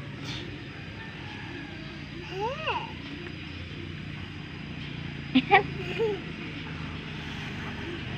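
A steady low hum, like a motor running in the background, with one short rising-and-falling voice call about two and a half seconds in and a few sharp clicks around five and a half seconds.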